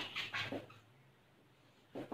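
Marker pen writing on a whiteboard: a few short squeaks and strokes in the first second, then quiet.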